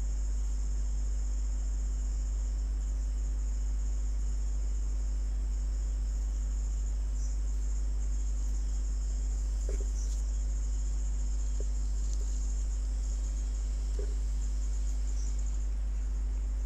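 Steady low electrical hum with a constant high-pitched whine: the background noise of a recording microphone, with a few faint ticks.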